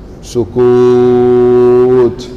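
A man's voice holding one long, steady low note, a drawn-out vowel, through a microphone. It starts about half a second in and lasts about a second and a half.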